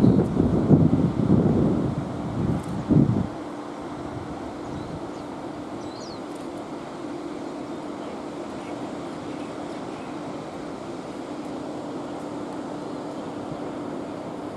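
Wind buffeting the microphone in loud, irregular gusts for the first three seconds, then settling to a steady outdoor wind hiss with a faint, steady low hum underneath.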